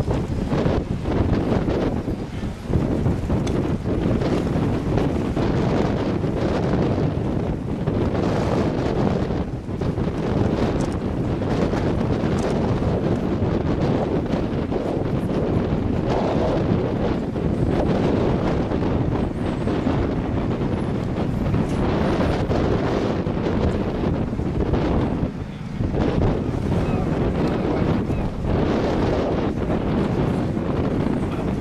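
Wind buffeting the microphone: a loud, steady low rumble that swells and eases in gusts, with a short lull about 25 seconds in.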